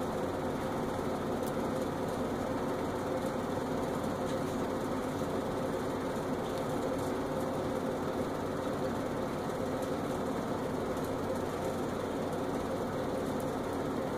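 Steady mechanical hum with a faint held tone, even and unchanging.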